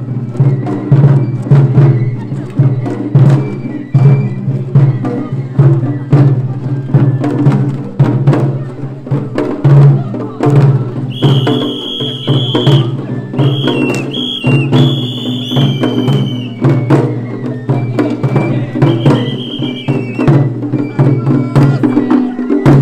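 Japanese festival float music (hayashi): taiko drums beating in a steady, dense rhythm. A high flute melody comes in about eleven seconds in, and again briefly near the end.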